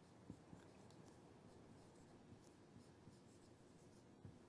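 Near silence, with faint soft strokes of a marker pen writing a word on a white board.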